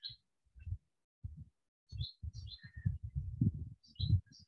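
Small birds chirping in short, high, repeated calls, over irregular low thuds and rumbling on the microphone that are loudest about three seconds in.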